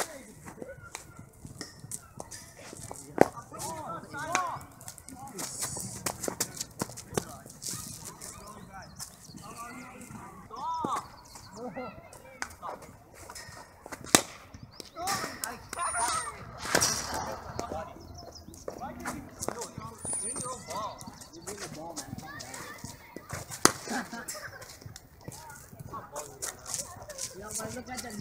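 Cricket bat striking a cricket ball: three sharp cracks, about ten seconds apart.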